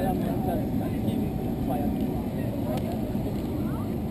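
A steady low rumble, with faint voices of people talking in the background.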